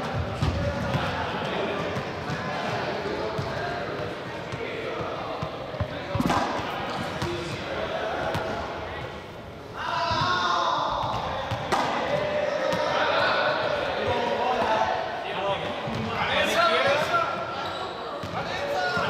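Balls bouncing and thudding on a sports-hall floor, echoing in the large room, over continuous background chatter from many voices.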